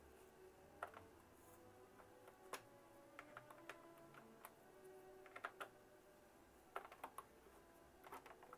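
Faint, scattered small plastic clicks and scrapes of a USB wireless dongle being fumbled into a computer's front-panel USB port, over near silence.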